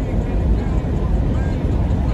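Steady low rumble of a running vehicle, heard from inside its cab.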